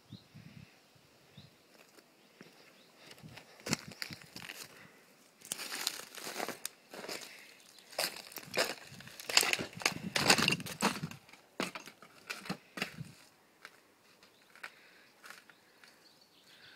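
Irregular crunching and cracking of charred wood and burnt debris underfoot, starting a few seconds in, heaviest through the middle, then thinning out.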